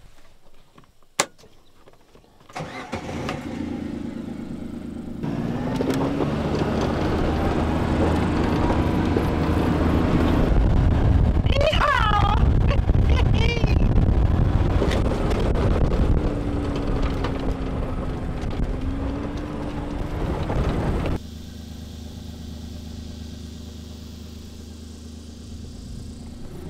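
A side-by-side utility vehicle's engine starts about two and a half seconds in, then runs as the vehicle pulls away and drives over rough ground, the engine note rising and falling. Near the end the sound drops suddenly to a quieter steady hum.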